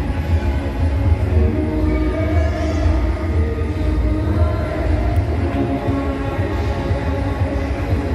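Coin-operated giraffe kiddie ride running: a steady low rumble with music playing.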